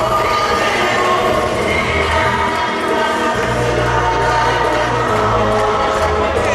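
Caribbean-style dance music with a singing voice, played loud over the hall's sound system for couples dancing; the bass line comes in heavier about three seconds in.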